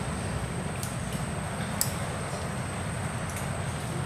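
Steady low rumble of background noise with a thin, steady high whine above it and a few faint clicks.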